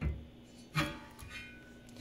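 Metal radiator relocation kit brackets knocking together as they are fitted, twice, the second about a second in, followed by a short metallic ring.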